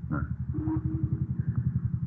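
A small engine running, heard as a fast, even low pulse that sets in at the start.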